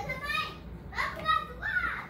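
A young child's high-pitched voice, talking or calling out in three short stretches.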